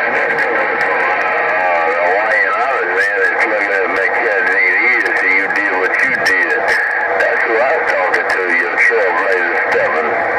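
Indistinct voices of distant stations coming through a President HR2510 radio's speaker on 27.085 MHz, buried in a steady rush of static with a thin steady tone under it.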